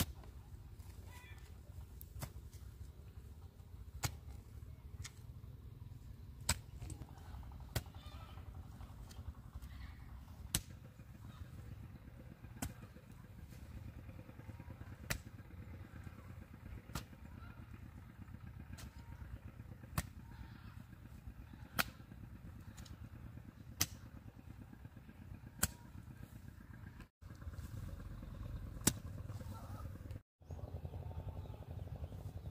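A metal hoe chopping into clumpy, freshly turned soil, one sharp strike about every one to two seconds, over a steady low rumble.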